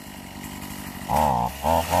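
Redmax BZG260TS 26cc two-stroke string trimmer engine, just started from cold, idling quietly and then, about a second in, revved hard in several short throttle bursts, its pitch sweeping up and down.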